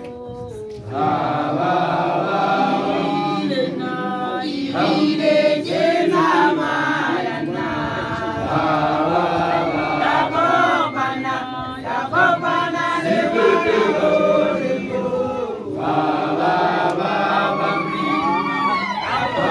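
Many voices chanting and singing together, a Sesotho initiation song of the makoloane (newly graduated initiates). The chant comes in about a second in and breaks off briefly near the end before resuming.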